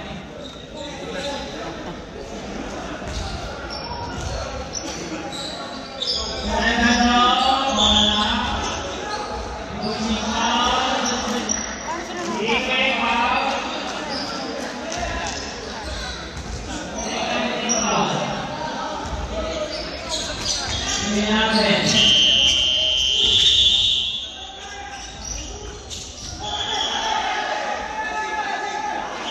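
Voices of players and coaches talking and calling out in a large echoing gymnasium, with basketball bounces on the hardwood floor. The voices come in louder bursts, loudest about a quarter and three quarters of the way through, where a brief high steady tone sounds.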